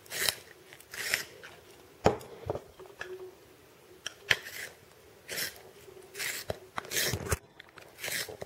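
A green colored pencil being sharpened in a pencil sharpener: a short crunchy scrape repeating about once a second, with a few sharp clicks among them.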